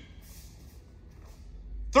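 Mostly quiet large-room tone between two loud shouted drill counts, with a faint brief swish shortly after the start; the next shouted count cuts in at the very end.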